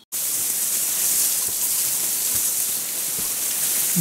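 A steady, high-pitched hiss that starts abruptly just after the beginning and holds at an even level.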